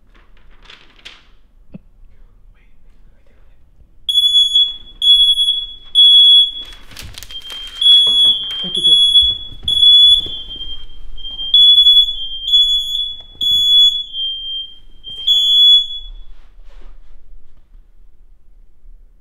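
Household smoke alarm, set off by smoke from burning paper, starts beeping about four seconds in: a repeating run of loud, high-pitched beeps that stops about two seconds before the end.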